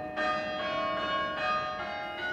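Church bells ringing, several bells of different pitch struck in turn. A new stroke comes about every half second, and each rings on into the next.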